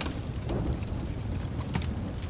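Steady rain in a thunderstorm ambience, with a low rumble underneath.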